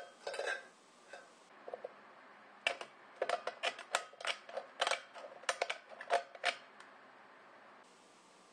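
Tin snips cutting into a ribbed steel food can, a quick run of sharp metallic snips, roughly a dozen and a half over about four seconds, as a notch is cut down the can's side. The run starts about two and a half seconds in.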